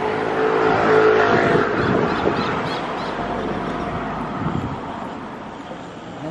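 A motor vehicle's engine passing close by: a steady hum that is loudest about a second in, then fades over the next few seconds.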